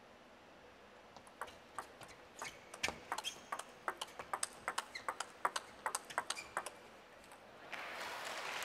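Table tennis rally: the plastic ball clicking off the rackets and bouncing on the table in a quick, even run of about four clicks a second. It starts about a second in and stops when the point ends, about a second before the end.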